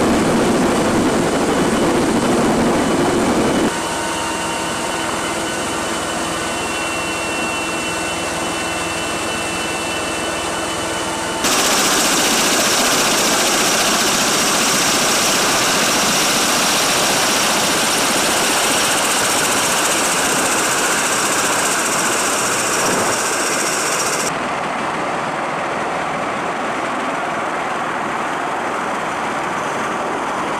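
MV-22 Osprey tiltrotor's engines and rotors running: a steady rushing noise that changes suddenly several times. It carries faint steady whining tones for a stretch early on, then turns into a bright, loud hiss while the rotors turn on the ground, and drops to a quieter rush near the end.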